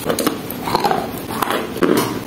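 Close-miked biting and chewing of a piece of wet chalk, a run of crisp crunches and sharp clicks mixed with wet mouth sounds.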